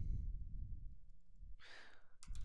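A man's short breath drawn in near the end, over a faint low hum.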